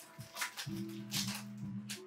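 Background music with sustained low notes.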